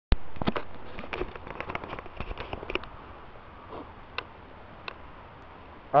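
Crackling and clicking from a hand-held camera's microphone being handled. A sharp click comes first, then irregular crackles that thin out and fade over about three seconds, and two single clicks come later.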